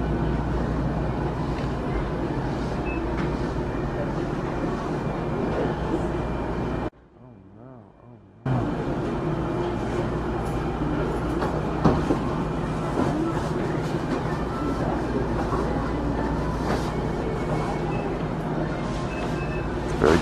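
Convenience-store interior ambience: a steady low machine hum with faint background voices of staff and customers. The sound drops out briefly about seven seconds in, then returns.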